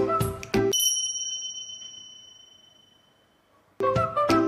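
Background music stops less than a second in, leaving a single high, bell-like ding that rings and slowly fades away over about three seconds; the music starts again just before the end.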